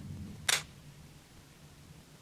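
A single short, sharp click about half a second in, over faint low handling noise.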